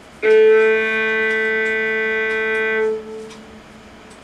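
A violin plays a single bowed low A on the G string, stopped with the first finger, and held steadily for about two and a half seconds. It begins a quarter second in and stops near the three-second mark, with a brief ring afterward.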